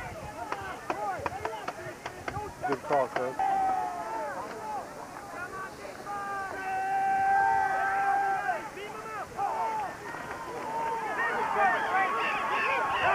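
Spectators' voices calling out and cheering, none of it clear enough to make out words. There is a quick run of sharp clicks in the first three seconds, and one long held shout around the middle.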